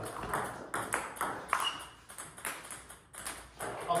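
Table tennis rally: a plastic ball clicking off the bats and bouncing on the table, a sharp click about every half second at an uneven beat.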